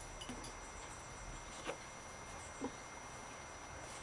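Quiet background with a few faint, brief taps as plastic cups are set one on another to build a tower.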